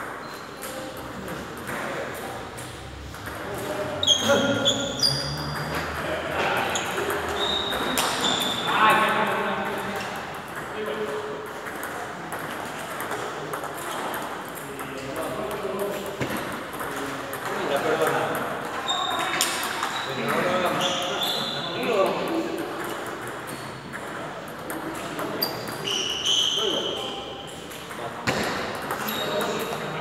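Table tennis ball clicking off rackets and the table in short rallies, with indistinct voices in a large hall.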